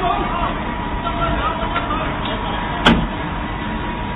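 Street and traffic noise heard from inside a parked taxi's cabin, with scattered voices of people at the scene and one sharp click about three seconds in.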